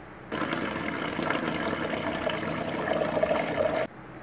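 Sink faucet turned on, water running steadily into a plastic basin in the sink, then cutting off sharply just before the end.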